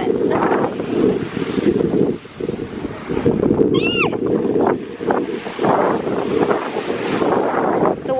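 Wind buffeting the microphone in a steady rumble. About four seconds in, a short high call rises and falls once.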